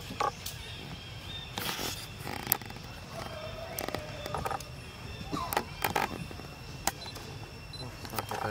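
Long-tailed macaques with small infants moving about on stone. Scattered sharp clicks and taps are heard, with a few short, faint squeaky calls over a faint steady high tone.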